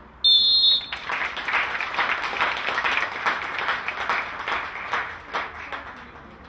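A referee's whistle blown once, a short steady shrill blast, followed by clapping for about four seconds that fades out near the end.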